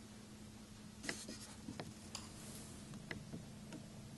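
Chinese ink brush stroked across rice paper in a series of short, quick strokes, a faint dry scratching as fur is laid in with the brush. A steady low hum runs underneath.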